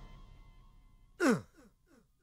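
The tail of a loud crash dies away. About a second in, a short sound slides steeply down in pitch, then repeats several times as a fading echo: a comic film sound effect.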